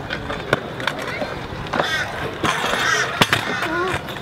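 Kick scooter wheels rolling on skatepark concrete, with several sharp clacks of scooter decks and wheels landing or tapping the ground.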